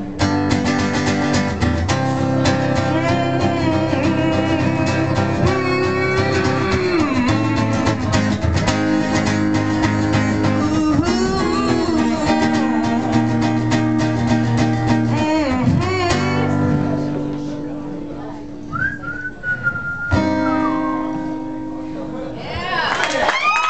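Acoustic guitar strummed along with a young male singing voice. About three quarters of the way in, the playing thins out and a short high whistle sounds. A last strummed chord rings near the end as the song closes.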